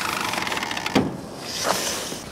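A car door creaking on its hinges as it swings, followed by a single sharp click about a second in.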